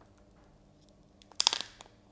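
Protective plastic film being peeled off a new smartphone: quiet handling at first, then a short crackly burst of crinkling about one and a half seconds in.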